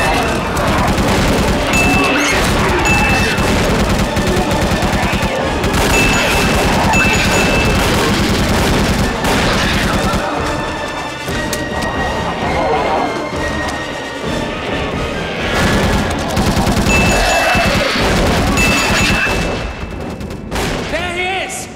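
Film battle soundtrack: repeated gunfire, quick volleys of shots with booms and impacts, over an orchestral score.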